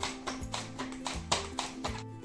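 Peeled potato sliced on a mandoline slicer: quick, crisp cutting strokes about four times a second as the potato is pushed back and forth across the blade, over background music.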